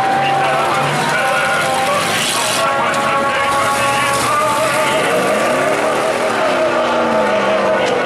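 Several race car engines running at once around a dirt track, their pitches overlapping. About five seconds in, one engine's pitch climbs and then falls away as it revs through and backs off.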